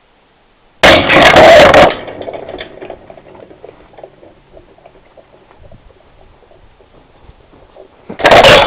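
A thrown golf disc striking the chains of a metal disc golf basket: a sudden, very loud rattle about a second in that lasts about a second and then dies away into light clinking and rustle.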